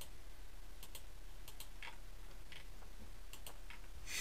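Faint, irregular clicks of a computer mouse, about half a dozen in four seconds, each one placing a point on a line drawn in mapping software.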